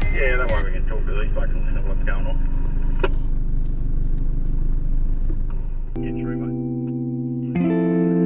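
A 4WD's engine and cabin rumble with indistinct voices during the first part. About six seconds in, background music with sustained guitar chords takes over, getting louder near the end.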